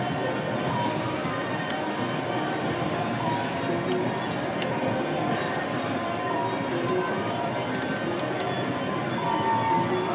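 Casino slot-machine sounds: electronic chimes and reel-spin jingles over a steady din of other machines, with a brief louder tone near the end.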